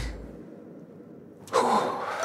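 Trailer sound design: a low rumble dies away, and after a quiet second a sudden noisy swell hits, about one and a half seconds in, then tails off.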